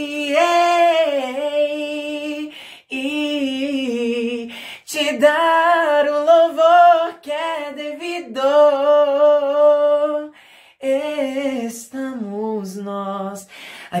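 A man singing unaccompanied in a light, clear upper-register voice, several phrases of a Portuguese worship song with short breaths between them and the melody stepping down in the last phrase. He sings the high notes with a relaxed, untensed throat.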